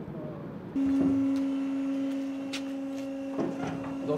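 A steady low machine hum, one constant pitch, starts suddenly about a second in, with a few sharp metallic clicks and knocks over it.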